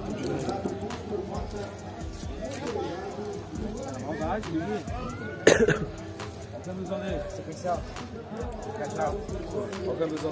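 Indistinct voices of people chatting, with music in the background. A single short, loud sound breaks through about five and a half seconds in.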